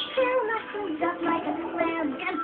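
A child's singing voice carrying a melody over a music backing, from a soundtrack song.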